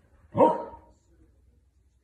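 A small dog barks once, a single short bark about a third of a second in.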